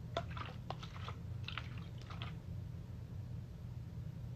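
Plastic water bottle crinkling and clicking as it is handled, a quick cluster of small crackles in the first two seconds, over a steady low hum.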